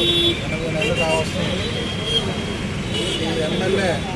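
A man speaking Telugu into reporters' microphones, with road traffic noise in the background.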